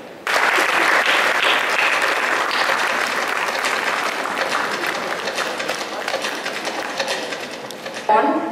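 Audience applauding: dense clapping that starts suddenly just after the start and slowly dies down toward the end.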